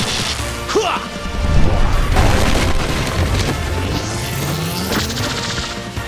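Cartoon energy-attack sound effects over background music: a heavy booming rumble with crashes as the power charges, and a rising whoosh as the beam is fired near the end.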